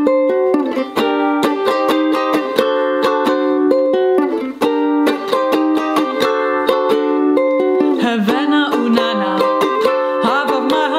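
Brüko soprano ukulele strummed in a steady rhythm, playing a repeating chord pattern. A woman's singing voice comes in about eight seconds in, over the strumming.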